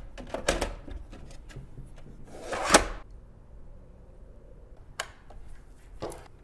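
Hard plastic parts of an Arctic Air Ultra personal air cooler being handled as its filter cartridge is fitted: a few light clicks, then a short sliding scrape that ends in a sharp snap about two and a half seconds in, and one more click near the end.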